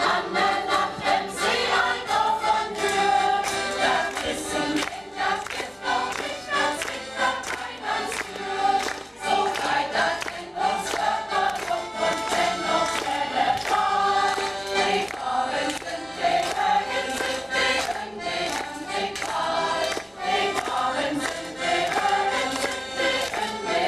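A choir of women and children singing a song with Low German (Plattdeutsch) lyrics.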